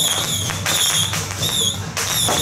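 A shrill whistle blown in several short, wavering blasts over a steady low drone, with a sharp knock about half a second in.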